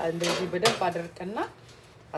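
A voice speaking for about a second and a half, then a pause.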